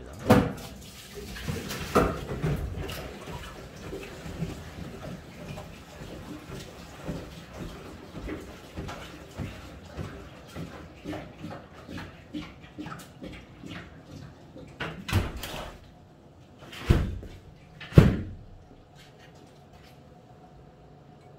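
Knocks and clatters of things being handled around a stainless-steel sap-packaging machine. There are a few loud sharp knocks near the start and three more near the end, with lighter irregular tapping in between.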